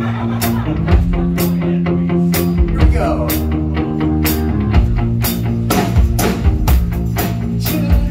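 Live rock band playing: a drum kit keeping a steady beat of about two hits a second under electric guitars and bass.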